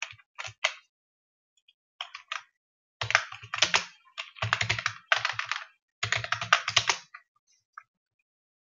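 Typing on a computer keyboard: a few separate keystrokes in the first second and around two seconds in, then a dense run of rapid keystrokes from about three to seven seconds in.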